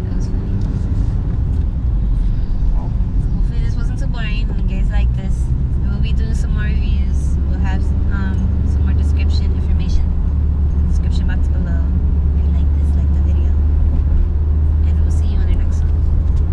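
Car engine and road rumble heard inside the cabin while driving: a loud, steady low rumble that grows steadier and stronger about five seconds in, with voices talking over it.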